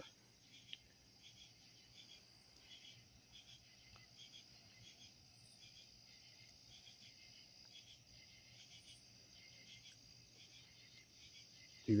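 Crickets and other night insects: a steady high trill with repeated short chirps over it, with a faint low hum beneath and one soft click shortly after the start.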